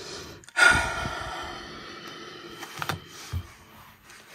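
A woman's long sigh starts about half a second in and fades away over a second or so, followed by a couple of faint taps.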